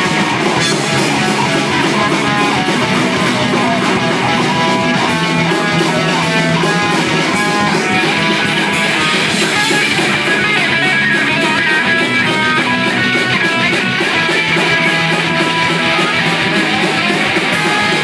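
Live rock band playing loud and steady: electric guitars and bass over a drum kit.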